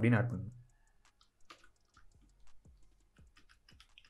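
Computer keyboard keystrokes: faint, irregular key clicks, a few a second, as code is typed. A single spoken word comes right at the start.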